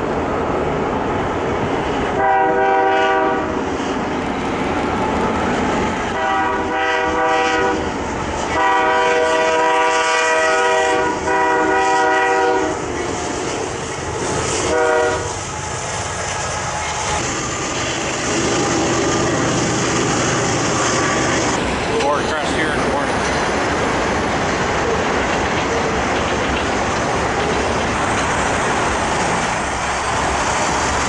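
Diesel freight locomotive's air horn sounding five chord blasts in the first half, the middle ones longest. After that comes the steady rumble of the freight train rolling past.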